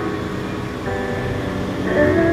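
Yamaha electronic keyboard playing a slow instrumental intro: held chords fade away, and a new chord is struck about a second in.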